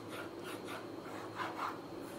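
Plastic stylus nib rubbing across a graphic tablet's drawing surface in a run of short shading strokes, a little louder about one and a half seconds in.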